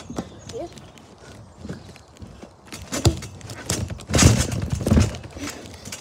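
Trampoline mat thumping as a child bounces and lands on it, with three loud low thumps in the second half, about three, four and five seconds in.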